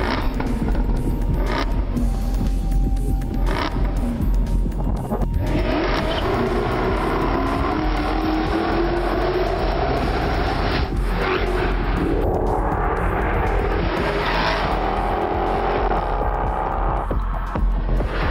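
A Jaguar R-S sports saloon's supercharged V8 revving hard under an advert's music, its engine note climbing in two long rises, the second ending suddenly near the end.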